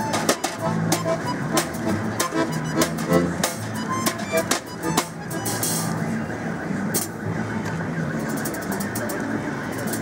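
Street folk music played live on button accordion and balalaika, with pitched accordion notes over sharp strummed and plucked chords.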